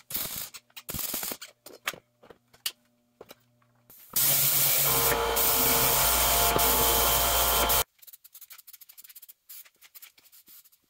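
Short crackling bursts of MIG welding in the first two seconds, then a random orbital sander running loud and steady on the steel steering box bracket for about three and a half seconds and stopping abruptly.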